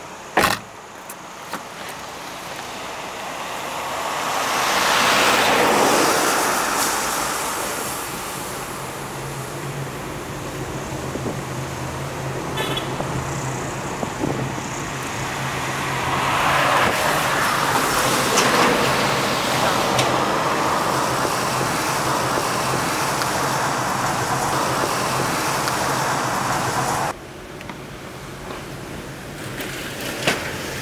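Road noise of a taxi heard from its back seat while moving: steady tyre and engine noise with a low hum, and two louder rushes that swell and fade about five and seventeen seconds in. A sharp click comes right at the start, and the noise drops abruptly near the end.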